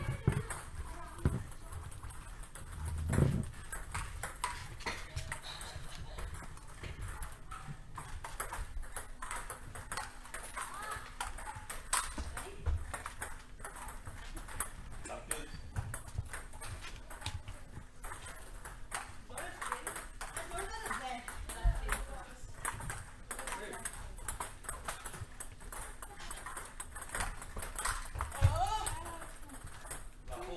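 Table tennis balls clicking off paddles and tables in casual rallies: a quick run of short, sharp ticks, with more from neighbouring tables.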